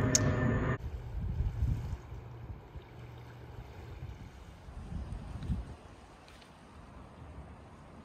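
Outdoor shoreline ambience: wind buffeting the microphone with water lapping, opening with a brief steady hum in the first second and fading lower after about two seconds.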